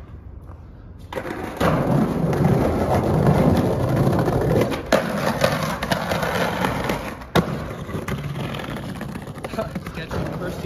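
Skateboard wheels rolling hard over brick pavers, then the board riding along a granite ledge, with sharp knocks of the board about five and seven seconds in.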